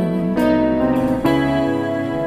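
Instrumental passage of a slow ballad between sung lines: sustained keyboard chords that change twice, about half a second in and again just past a second.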